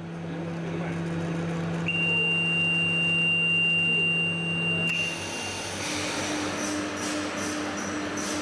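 Automated respirator production line: a steady machine hum, with a steady high warning beep held for about four seconds as the line is started at its control panel. After about five seconds the line runs, with a rhythmic mechanical pulsing and clicking.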